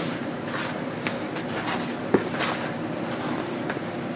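A T-shirt being unfolded and smoothed flat by hand, fabric rustling and brushing against a blanket, with a few small clicks and one sharper click about two seconds in.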